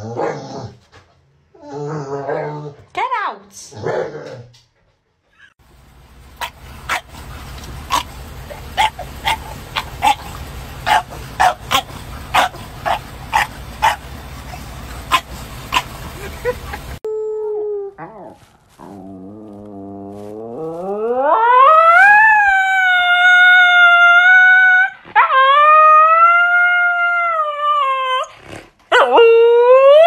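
A Staffordshire bull terrier makes a few short whining sounds. Then comes a run of short sharp sounds, about two a second, over steady outdoor noise. Last, a husky-type dog howls in long calls that rise and then hold high and loud, broken by brief gaps.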